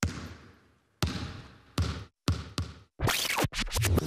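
A string of sharp, echoing hits, the first two about a second apart, then coming closer and closer together until a quick cluster near the end: a produced sound-effect transition.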